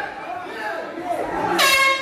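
A loud, steady horn blast starts about one and a half seconds in and lasts about half a second, over background shouting from the cage-side corner. Such a horn typically signals the end of a round.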